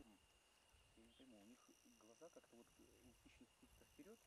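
Near silence, with faint, indistinct speech in the background and a steady thin high tone.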